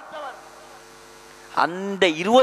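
Faint steady electrical mains hum from the microphone and amplification chain, heard in a gap between a man's spoken phrases. His voice comes back near the end.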